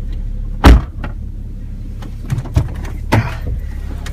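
A loud thump about a second in, then three lighter knocks, over the steady low rumble inside a car.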